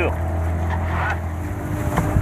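Yamaha outboard motor on a RIB running at a steady idle, a low even hum whose note shifts near the end.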